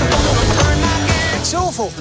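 A Ford GT40 race car's engine running hard as the driver works the gear lever, mixed with trailer music. The engine sound cuts away about one and a half seconds in, and a man's voice begins.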